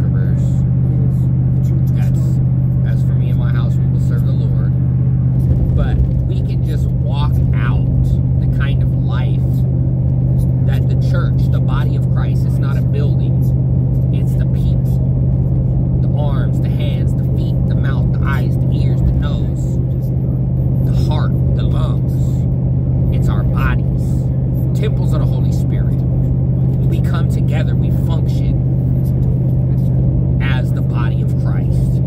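Steady low drone of a vehicle driving at highway speed, heard from inside the cabin, under a man's talking.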